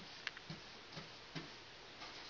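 A paintbrush working along a wooden baseboard: faint, irregular ticks and soft taps as the bristles and brush meet the trim, about five in two seconds.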